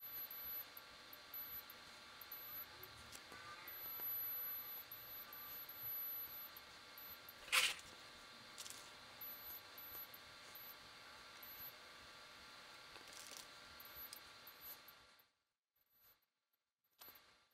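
Faint room tone: a steady electrical hum with a few light clicks, and one sharper click about halfway through.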